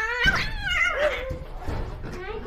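Domestic cat yowling while held down by gloved hands: a couple of drawn-out cries that rise and then fall in pitch.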